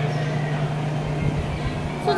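A steady low mechanical hum under an even hiss, with a few dull low thumps in the second half.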